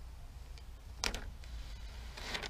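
Paper transfer tape being peeled off vinyl lettering on a trailer panel, with a short rasp about a second in, over a faint low rumble.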